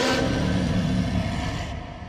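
Cinematic logo-sting sound effect: a sudden loud hit at the start, followed by a deep rumbling tail that slowly fades away.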